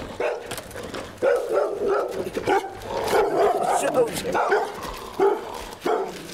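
A dog barking repeatedly behind a gate, short barks coming in quick runs.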